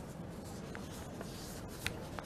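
Faint room ambience with a few light clicks or taps, the clearest a little before the end.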